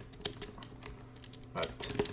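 Computer keyboard keys clicking in a short run of separate keystrokes as a word is typed.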